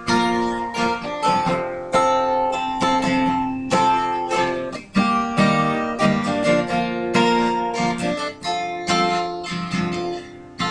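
Acoustic guitar played solo, chords struck in a steady rhythm of about two a second and left ringing between strokes: the instrumental intro of a song, with no voice yet.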